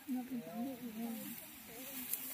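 Faint talking in the background over a steady high hiss.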